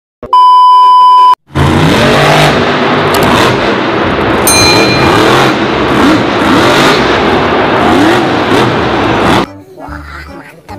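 A loud 1 kHz test-tone beep lasting about a second. Then a monster truck's engine revving over arena noise, its pitch rising and falling again and again, cut off sharply about half a second before the end.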